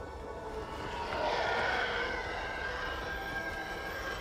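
Film sound effect of a starfighter engine roar, a TIE fighter approaching: it swells in over about the first second and then holds steady.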